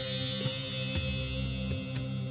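Background music: chimes ringing in many high, sustained tones over a steady low drone.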